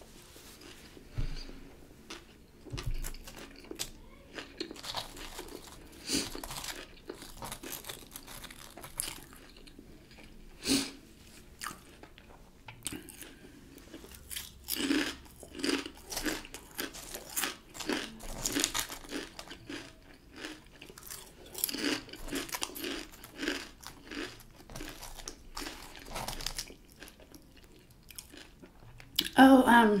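Close-miked chewing with irregular crisp crunches of kettle-cooked jalapeño potato chips being bitten and eaten.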